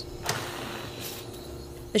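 Commercial espresso machine running while pulling shots: a steady hum with a hiss for about a second near the start.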